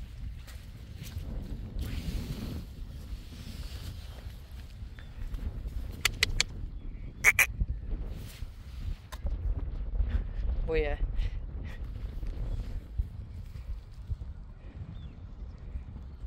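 Wind rumbling on the microphone, with a few sharp clicks in the middle and, about eleven seconds in, a short falling, wavering call from one of the young horses, a whinny.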